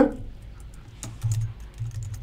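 Typing on a computer keyboard: light, scattered key clicks as a short word is typed.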